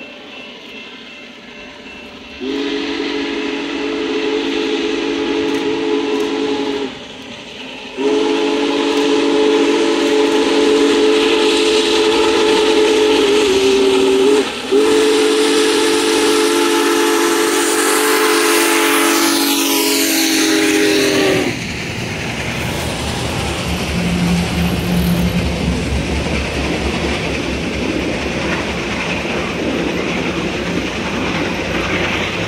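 Union Pacific Big Boy No. 4014's steam whistle blowing a chord in three long blasts as the locomotive approaches at speed. The third blast cuts off as the engine passes, and the train then rolls by with a steady low rumble and wheels clacking over the rail joints.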